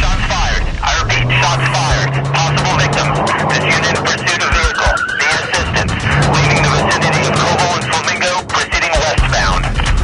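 Crackly police radio transmission, a voice calling 'This unit in pursuit of vehicle, need assistance', laid over car and tyre-skid sound effects and dramatic music.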